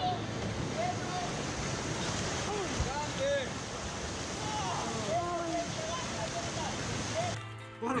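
River rapids rushing steadily, with shouting voices over the water noise. The water sound cuts off suddenly near the end.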